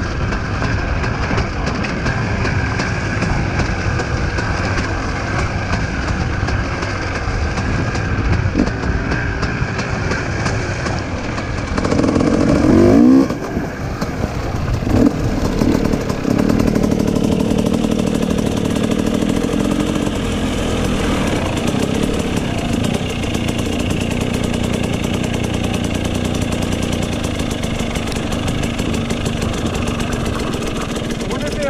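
Motorcycle engine running continuously under way, its revs rising and falling in a short loud burst about twelve seconds in, then settling to a steadier drone.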